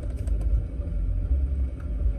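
Low, steady car rumble heard from inside the cabin.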